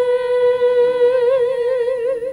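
Unaccompanied female singing: one long held note of a worship song, steady at first, then wavering with vibrato from about a second in as the song draws to its close.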